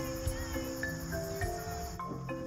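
Crickets chirping in a steady high trill, with a few soft sustained music notes changing pitch underneath.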